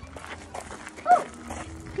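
Footsteps crunching on a gravel path, with one short, loud animal call about a second in.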